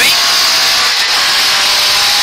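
Ford Escort Mk2 rally car's Pinto four-cylinder engine running hard at speed, heard from inside the cabin together with road and wind noise, with a brief dip in level about a second in.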